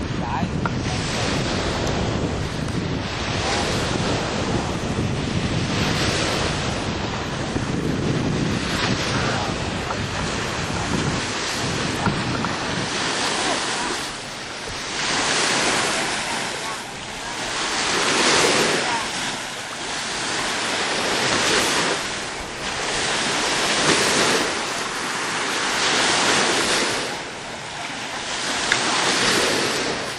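Small lake waves breaking and washing up on a sand beach, the surges rising and falling about every two to three seconds. Wind buffets the microphone, most heavily in the first half.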